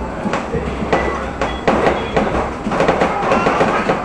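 Passenger tram running, heard from inside the car: a steady low rumble with irregular clicks and knocks scattered through it.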